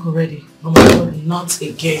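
A single loud thump about three-quarters of a second in, over a woman's voice talking.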